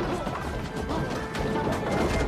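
Stacked cardboard crates of oranges crashing down and fruit scattering as a man falls onto them, a run of sharp knocks and thuds, over action-film score music.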